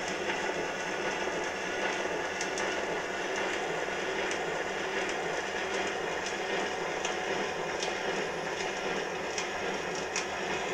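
Edison Diamond Disc phonograph playing a record: a steady surface hiss with scattered crackles and clicks.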